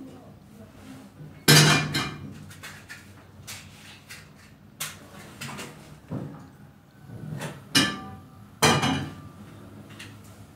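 A cooking pan being handled and set down: a series of clanks and knocks with short ringing, the loudest about one and a half seconds in and four more spread through the rest.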